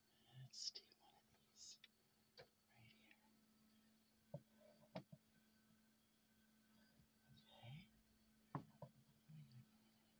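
Near silence: faint breathy whispering and a few soft clicks as eggs are picked up and held to the candler, over a faint steady low hum.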